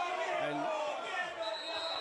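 Several voices shouting at once in protest at a foul challenge that has brought a player down, over a man's commentary.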